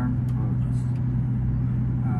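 Steady low hum over a low rumble, like a machine or an idling engine running, with no change in pitch or level.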